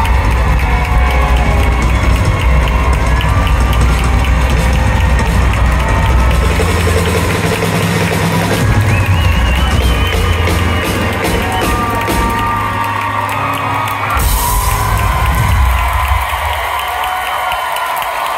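Live rock band with piano and keyboards playing the closing bars of a song at full volume. The song ends with a final chord about fourteen seconds in, and a crowd cheers.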